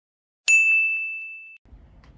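A single bright ding sound effect, struck about half a second in, ringing on one high tone and fading out over about a second.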